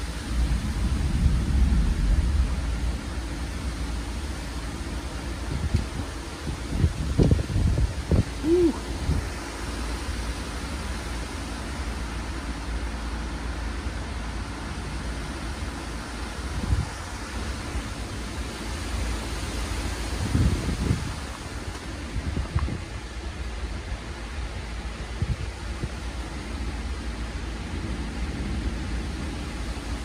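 Microburst wind of 40–50 mph: a steady rush of wind through the tree's leaves, with gusts hitting the microphone in low rumbling surges about two seconds in, again around seven to nine seconds, and near twenty seconds.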